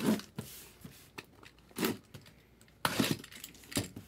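Cardboard boxes being handled: four or five short scrapes and rubs of cardboard, the loudest near the start and around three seconds in.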